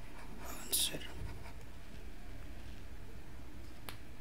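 A short breathy exhale or whisper from a person about a second in, then a single sharp click near the end, over a steady low hum.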